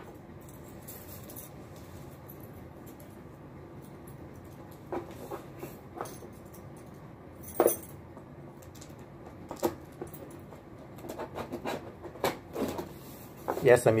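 Scattered handling knocks and clicks, with keys jangling as a set of house keys is picked up to cut the tape on a cardboard box. The knocks come more often toward the end.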